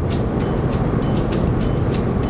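Steady road and engine rumble inside a moving car's cabin, with music playing over it that has a quick, light, regular beat.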